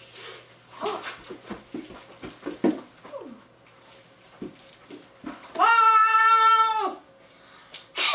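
A child's voice imitating a turkey: a string of short squeaky, gliding calls, then one loud, high, steady cry held for over a second about six seconds in.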